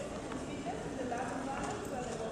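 Quiet, distant speech, too faint to make out, as if from someone away from the microphone. A few light clicks are mixed in.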